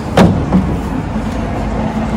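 Steady low rumble of road traffic passing below, with one short sharp knock just after the start.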